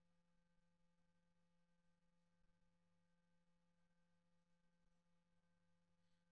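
Near silence: room tone with a very faint, steady hum.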